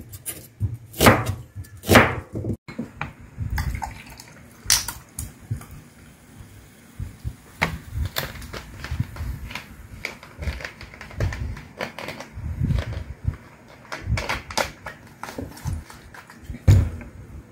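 A chef's knife chopping a raw onion on a plastic cutting board, two chops in the first two seconds. After an abrupt break, cola is poured from a bottle into a glass among scattered knocks and handling noises of tableware on a table.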